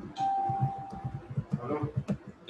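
A single steady electronic tone, like a doorbell or notification chime, held for about a second, followed by a voice starting to speak near the end.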